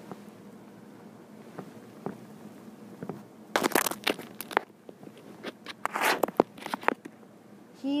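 A young bearded dragon's claws scrabbling and scraping over the recording device right at the microphone: a quiet start, then a burst of sharp clicks and rasping scrapes from about three and a half to seven seconds in.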